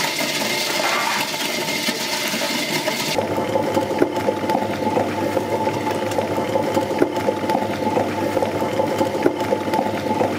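Tabletop wet grinder running, its stone roller turning in the spinning steel drum as it grinds soaked dal with a wet churning sound. About three seconds in the sound changes to a steadier motor hum, with the thick batter slapping and irregular clicks.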